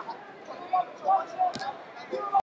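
Voices of people talking in a gym hall, with a single sharp thump about three quarters of the way through.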